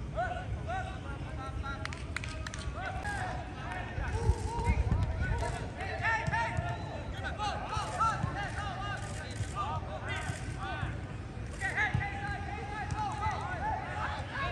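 Footballers calling and shouting to each other in short bursts during a rondo passing drill, with occasional thuds of a football being kicked, over a steady low rumble.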